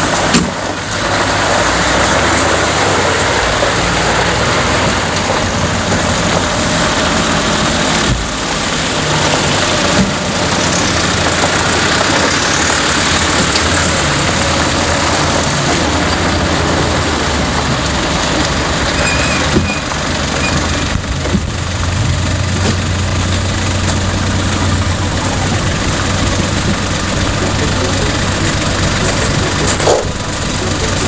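Engines of old Land Rovers and other four-wheel-drive vehicles running as they drive slowly past on a gravel track: a steady low engine drone under a dense, noisy rush.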